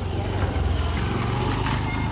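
A low, steady engine rumble, as of a vehicle idling, with faint voices over it.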